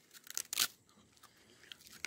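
Dry, uncooked spaghetti strands snapping and crunching between the teeth as a bundle is bitten: a quick cluster of sharp cracks in the first second, then faint crunching as it is chewed.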